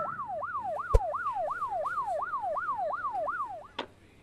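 Police siren in yelp mode, its pitch swooping rapidly up and down about three times a second, cutting off shortly before the end. A single sharp click sounds about a second in.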